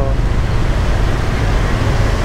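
Steady rumble and rush of a motorcycle riding in city traffic: engine and wind noise on the rider's camera microphone.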